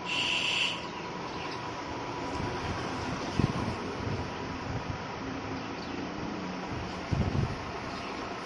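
Steady background hum with a faint steady tone, broken by a short high chirp at the very start and a couple of dull bumps, about three and a half and seven seconds in.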